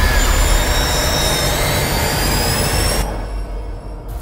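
Horror-trailer sound-design riser: a loud rushing noise over a deep rumble, with thin tones gliding slowly upward. The top of the hiss falls away about three seconds in and the sound eases off near the end.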